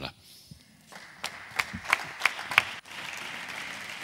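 Applause from a small group of people: a few sharp, separate claps starting about a second in, merging into steady clapping near the middle.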